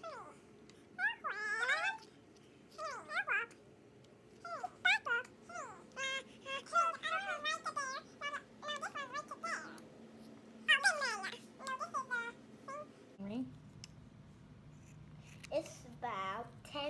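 A toddler's high-pitched babbling and whining, in a string of short vocal bursts that slide up and down in pitch, with brief quiet gaps between them.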